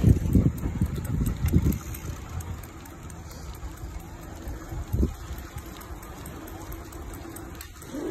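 Wind buffeting the microphone and bicycle tyres rolling on a concrete road: gusty for about the first two seconds, then quieter and steadier, with a single thump about five seconds in.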